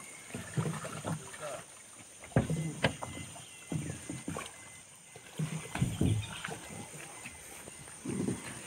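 People talking in short, scattered phrases some way off, with two sharp knocks a little over two seconds in.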